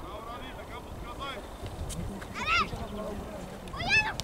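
Children's high-pitched shouts on a football pitch: one call about two and a half seconds in and another starting near the end, over steady low background noise.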